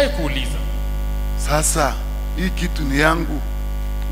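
Steady low electrical hum in the church sound system, unbroken throughout. A man's voice speaks in a few short phrases over it, about a second and a half in and again near three seconds.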